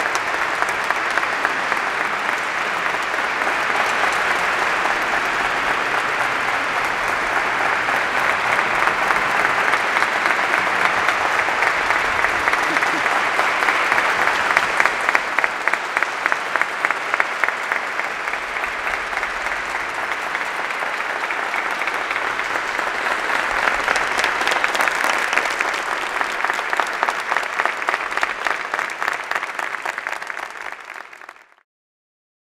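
Concert audience applauding at length. About halfway through, the clapping settles into a regular rhythmic beat.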